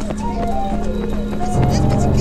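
Festival music on the film's soundtrack: a flute playing short stepped notes over a low steady drone, joined by a second, deeper drone about one and a half seconds in, with voices mixed in.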